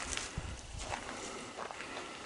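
A few irregular footsteps with light rustling, outdoors on leaf-strewn ground.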